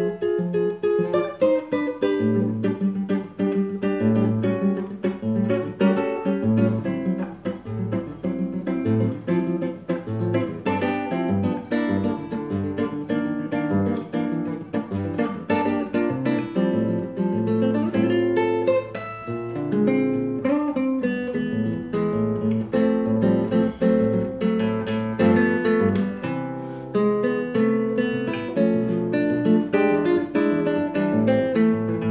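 Solo nylon-string classical guitar (violão) played fingerstyle: a continuous flow of plucked melody notes and chords.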